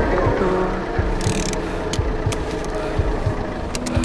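A car engine running under soft background music, with a few sharp clicks near the end.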